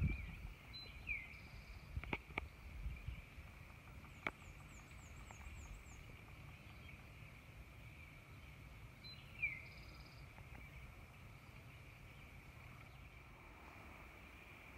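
Faint outdoor ambience at an overlook: a steady high insect-like hum, with a bird's short downward-sliding call about a second in and again near the middle, and a quick high chirping trill around four seconds. A few faint clicks early on and a low steady rumble lie underneath.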